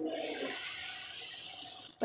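Adai batter sizzling as a ladleful meets a hot tawa and is spread: a hiss that starts suddenly and slowly fades.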